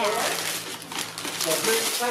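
Gift-wrapping paper being torn and crumpled by hand as a present is unwrapped.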